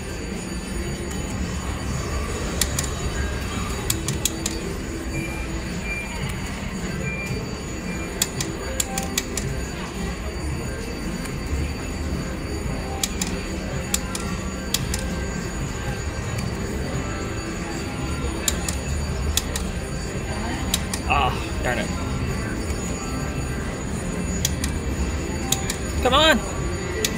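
Casino slot-floor din: a steady low hum, background voices and machine tunes and chimes, with scattered sharp clicks as a three-reel mechanical slot machine is spun again and again.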